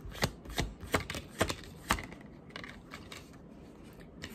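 A deck of tarot cards being shuffled in the hands: a run of light card snaps, about five distinct ones in the first two seconds, then softer handling.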